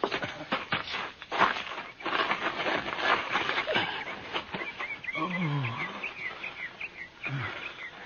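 Scuffling and shuffling sound effects as a scalped, dying man is lifted and carried, with his low drawn-out groans about five seconds in and again near the end. Short high chirps run through the middle.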